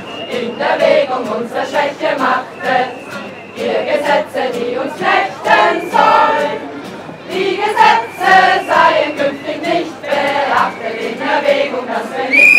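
A choir of people singing together in phrases, with short breaks between them.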